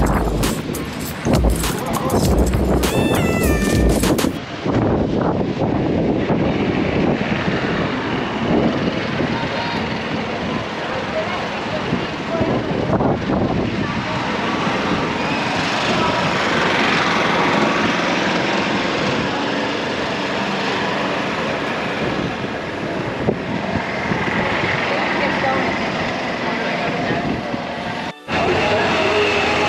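Night street ambience: a steady, busy mix of indistinct voices and traffic noise. The first four seconds or so hold a short melodic passage, then the sound changes abruptly.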